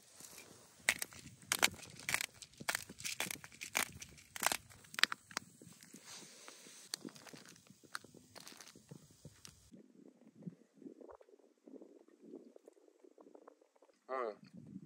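Slices of Polish sausage sizzling in a frying pan on a portable butane stove, with loud irregular crackling pops over a high hiss. About ten seconds in the sound drops away abruptly, leaving a faint low rumble.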